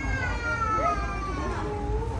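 A young child crying: one long wail that falls slowly in pitch over about a second and a half, with other voices around it.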